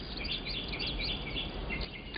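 Small birds chirping: many short, high-pitched chirps repeating several times a second over a steady low background hum.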